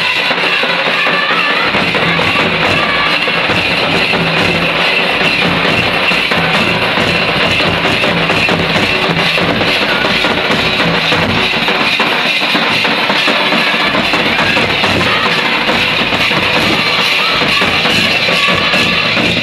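Live jadur folk music: large double-headed barrel drums beaten in a steady rhythm, with voices singing along, loud and continuous.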